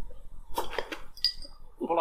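Glass beer bottles clinking against each other as one is picked up from a row of bottles: a few quick knocks, then a short, high glassy ring about a second in.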